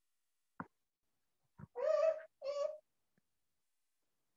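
A cat meowing twice, each call about half a second long, preceded by two faint clicks.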